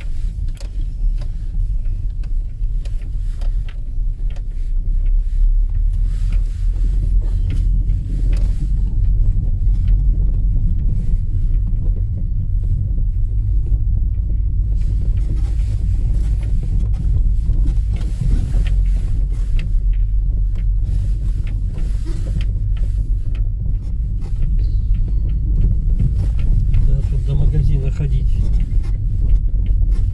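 A car driving slowly on a rough dirt road, heard from inside the cabin: a steady low rumble of engine and tyres, with occasional light knocks and rattles.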